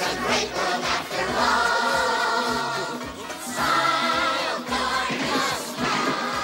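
Music: a chorus of voices singing a bouncy tune over a band with a steady beat, with long held notes at about one and a half and about four seconds in.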